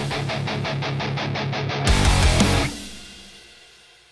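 High-gain electric guitar riff through a Revv G20 tube amp head: rapid, evenly spaced palm-muted chugs, then a louder chord a little before halfway through that rings out and fades away.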